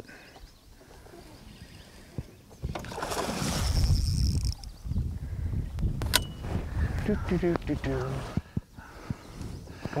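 Water splashing as a hooked northern pike thrashes at the surface beside the boat: a loud rush of splashing from about three to five seconds in. A sharp click follows about six seconds in, then low, muffled voices.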